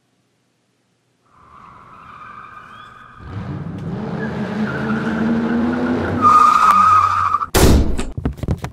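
A staged horror sound effect: after a moment of silence, a long squealing screech with a low grinding layer under it builds steadily in loudness for several seconds, then ends in a very loud sudden burst near the end.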